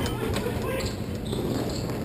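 Echoing hockey play in an indoor rink: skates moving on the rink floor, faint stick taps and players' voices, with no loud impacts.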